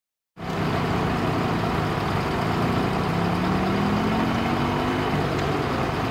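A heavy vehicle's engine running steadily, with a low hum and one tone that slowly rises in pitch through the middle.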